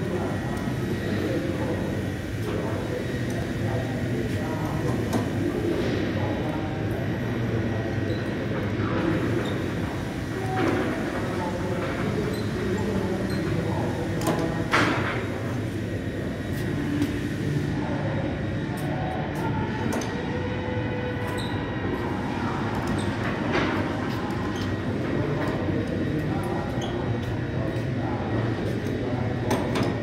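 Hand-cranked arms of a cantilever long-goods rack, loaded with steel profiles, rolling out and back in: a steady mechanical rumble with a few knocks along the way.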